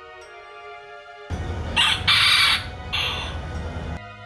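Soft background music, then about a second in a rooster crows loudly, one drawn-out crow in several parts that lasts most of the rest of the time.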